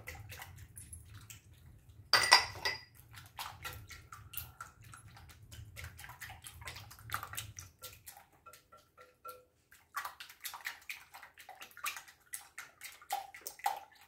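Whisk beating a thin egg-and-milk custard in a glass mixing bowl: rapid, irregular clicking of the whisk against the glass with liquid sloshing. A louder clink comes about two seconds in.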